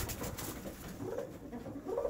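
Domestic pigeons cooing softly in a loft, with short, faint calls.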